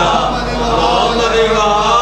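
A gathering of men reciting salawat together, a loud chanted blessing on the Prophet Muhammad and his family in many overlapping voices.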